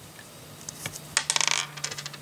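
Small plastic LEGO pieces clicking and rattling in the fingers as they are fitted together: a cluster of quick light clicks in the second half, after a quiet first second.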